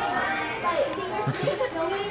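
Background babble of several people talking at once, with children's voices among them.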